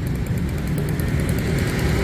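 Street traffic: motorbikes and cars running past on a busy road, with a steady low engine hum.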